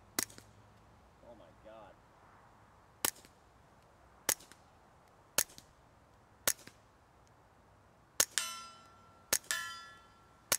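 Integrally suppressed .22 LR pistol, the TBA Suppressors Sicario on a Ruger Mark IV, firing seven single shots at irregular intervals of one to three seconds. Each shot is a short quiet pop followed by a faint tick. The last two shots are each followed a moment later by a ringing metallic clang that fades slowly.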